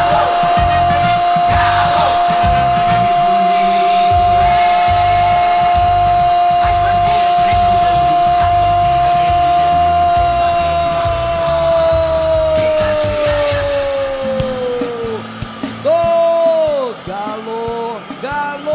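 A Brazilian radio narrator's goal cry, one long unbroken "gol" held for about fifteen seconds, sagging in pitch as it runs out, over a drumming goal jingle. Short falling shouts follow near the end.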